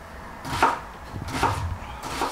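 Kitchen knives cutting red onion and avocado on plastic cutting boards, with two sharp knife strikes on the board a little under a second apart.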